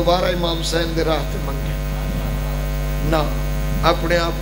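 Steady electrical mains hum in the microphone and sound system, with a man's voice heard briefly in the first second and again near the end.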